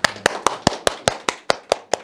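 Hand clapping: a steady run of sharp, even claps about five a second, applauding a speaker as he is introduced.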